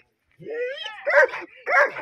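Dog barking: a couple of loud barks, one about a second in and another near the end.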